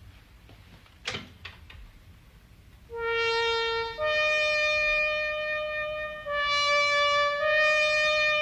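Moog synthesizer playing a trumpet-imitation solo: a bright, brassy tone built from a filtered sawtooth wave whose filter an envelope generator opens at each note. It enters about three seconds in as a slow line of four long held notes, after a short click about a second in.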